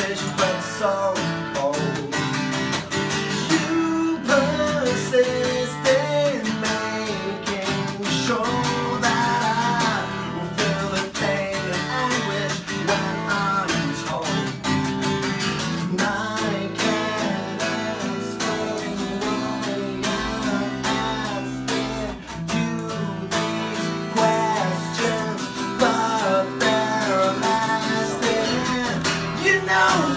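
Live acoustic song: two acoustic guitars playing, one strummed, with a man's singing voice over them.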